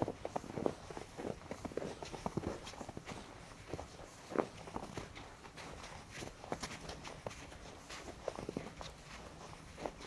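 Footsteps crunching in fresh snow at a steady walking pace, about two steps a second, with one heavier step about four and a half seconds in.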